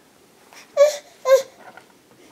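Toddler giving two short, high-pitched whiny cries about a second apart, the second dropping in pitch at its end.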